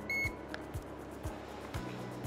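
One short, high electronic beep from a handheld infrared forehead thermometer, the signal that a temperature reading has been taken. Under it, background music with a steady beat of about two low thumps a second.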